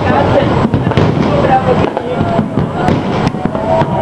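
Aerial firework shells bursting in a rapid, continuous series of bangs and crackles, with voices of onlookers mixed in.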